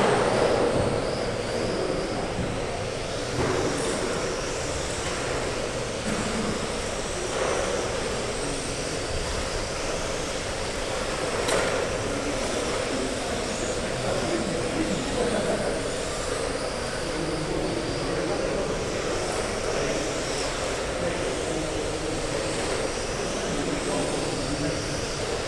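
1/12-scale GT12 electric pan cars racing on a carpet track in a reverberant hall: a faint, wavering high whine of their brushless motors over a steady background hum, with a few sharp knocks at intervals.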